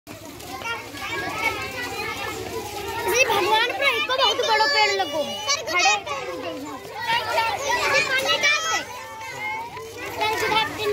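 Children's voices, several talking and calling out at once, high-pitched and continuous.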